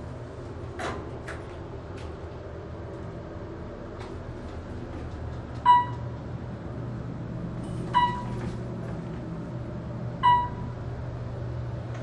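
Otis traction elevator car travelling up, with a steady low hum of the ride and a short electronic beep about every two seconds, three times, as it passes each floor. A few light clicks come in the first two seconds.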